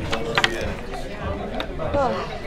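Wooden chess pieces clacking against each other and the board as they are gathered up by hand: a few sharp clacks, a quick pair near the start and another near the end.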